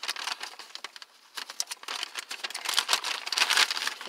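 Brown paper bag rustling and crinkling as it is handled and opened, in irregular crackles with a brief lull about a second in.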